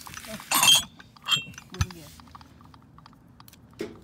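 Heavy glass ashtrays clinking as they are handled and set down on a table: a loud clink with a short high ring about half a second in, a second ringing clink just after a second, then a few light knocks.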